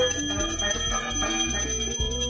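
Puja hand bell rung continuously, a steady high ringing held through the whole moment, over low sustained tones.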